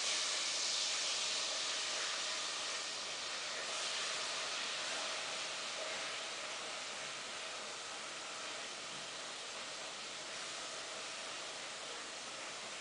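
A steady, even hiss that comes up suddenly just before the start and slowly eases off.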